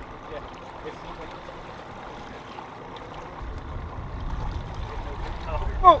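Sea water washing along a small boat's hull, with a low rumble coming in about halfway through and building.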